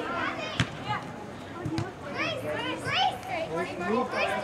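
Girls' voices calling and shouting during soccer play, several overlapping, loudest about halfway through. Two sharp knocks cut through, about half a second in and just before two seconds.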